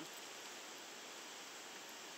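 Steady, even rush of a small river's flowing water.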